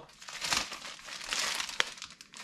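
Clear plastic packaging crinkling and rustling in irregular bursts as a new motorcycle control cable in its plastic sleeve is handled and unwrapped, with one sharp click near the end.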